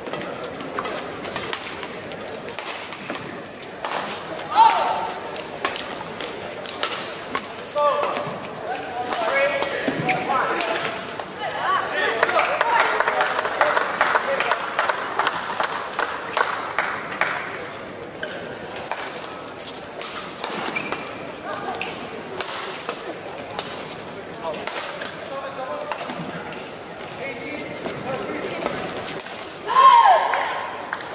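Badminton play in an indoor hall: sharp racket strikes on the shuttlecock and other sudden clicks and knocks, with voices in the hall and a few short calls between them.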